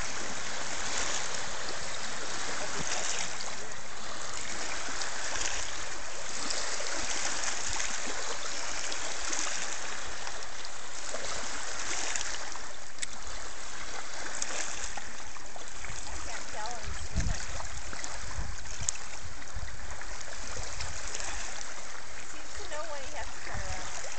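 Small lake waves lapping and washing over a shallow rocky shore, a steady wash that swells and eases every second or two. A brief low thump comes a little past the middle.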